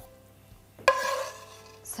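A metal serving spoon clinks once against the dish while pasta is being served, about a second in: a sharp knock with a short ringing tail that fades away.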